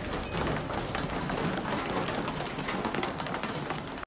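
A dense, rapid clatter of many quick knocks and scuffles over a noisy background.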